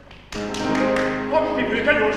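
Opera singing with piano accompaniment: after a brief hush, voices and piano come in together sharply about a third of a second in and carry on loudly.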